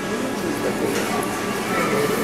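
Indistinct voices of people talking at a restaurant counter, with music playing underneath.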